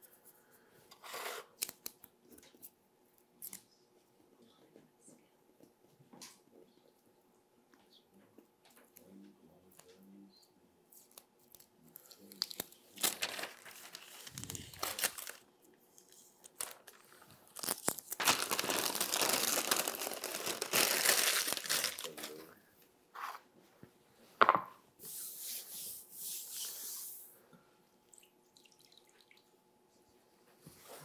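Paper being handled and crumpled on a workbench. A few short rustles come first, then a burst, then a longer crumpling of about four seconds in the middle, a sharp knock, and a last brief rustle.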